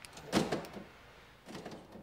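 Ford Focus central door locking actuating from the remote key fob as the doors lock: one quick clunk about a third of a second in, with fainter clicks near the end.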